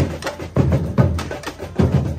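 A batucada drum corps playing live: deep surdo bass drum strokes land about twice a second under a dense, driving pattern of snare and smaller drum hits.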